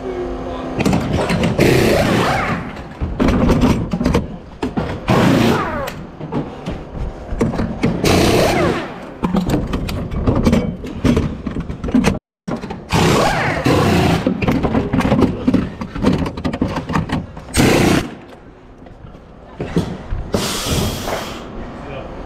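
A pneumatic wheel gun fires in short, sharp bursts about half a dozen times during a pit-stop wheel-change drill on an LMP2 race car. Between the bursts come clatter and thumps of wheels and tools being handled.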